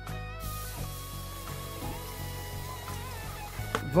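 Background instrumental music with steady tones, under a faint even hiss.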